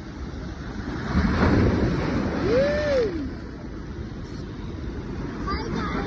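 Sea waves surging and breaking over the rocks at the foot of a seawall; a big surge swells about a second in and crashes, then eases off. A single short rising-then-falling cry sounds in the middle of it.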